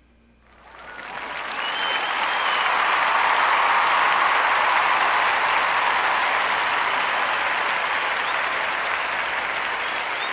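A crowd applauding, fading in over the first couple of seconds and then clapping steadily, with a short whistle about two seconds in.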